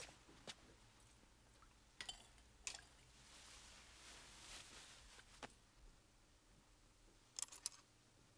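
Near silence with a few faint clicks and clinks of small objects being handled, a soft rustle in the middle, and a quick cluster of clicks near the end.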